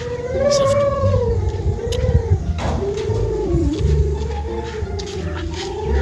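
A long, wavering howl-like call, held for several seconds and breaking briefly about two and a half seconds in.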